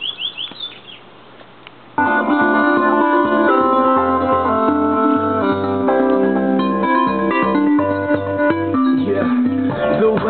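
Music from an iPod played through a homemade portable stereo built from car audio parts: a Visonik 10-inch subwoofer and two 6x9 Kenwood speakers. The music starts suddenly about two seconds in, loud, with held chords over a pulsing bass line.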